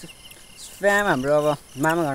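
A person's voice makes two drawn-out vocal sounds, held on a steady pitch, about a second in and again near the end, with no clear words. A faint steady chirring of crickets runs underneath.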